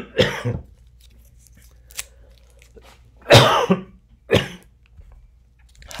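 A man coughing: a short cough at the start, then a harder cough about three and a half seconds in, followed quickly by a shorter one.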